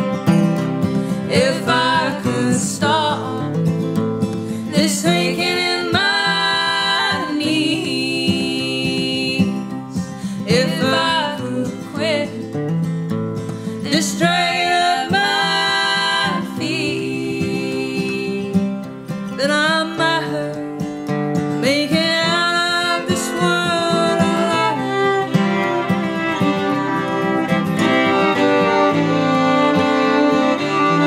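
Live bluegrass string band playing: acoustic guitar strumming under two fiddles, with women's voices singing in close harmony at times.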